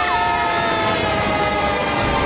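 Cartoon sound effects: a steady rush of water spray under a long whistle-like tone. The tone flicks up and back down at the very start, then slides slowly and evenly downward in pitch.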